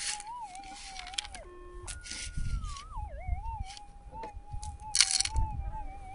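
Minelab GPX 6000 metal detector's threshold tone humming and wavering in pitch, briefly changing to higher steady tones. Dirt and small stones scrape and rattle in a plastic scoop, loudest about five seconds in.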